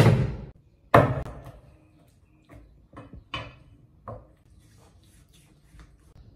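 Cleaver chopping through pig's trotters on a thick wooden chopping block: two heavy chops, one at the start and one about a second in, then several lighter knocks and taps on the block.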